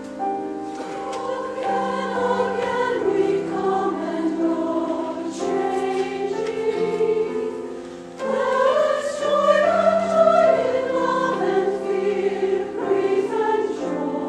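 Large mixed choir of men and women singing with grand piano accompaniment. The voices come in about a second in over the piano, ease off briefly just before the middle, then return louder.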